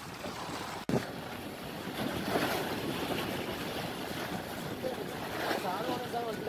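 Sea waves washing against the rocks of a breakwater, with wind buffeting the microphone; the surf swells about two seconds in.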